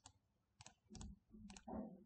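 Computer mouse clicking: about four short, sharp clicks, faint overall, as a desktop context menu is opened and an item chosen. A faint low voice-like sound comes near the end.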